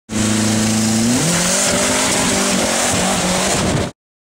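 Car engine running hard at highway speed under heavy wind rush. The engine note steps up in pitch a little over a second in and wavers after that. The sound cuts off abruptly just before the end.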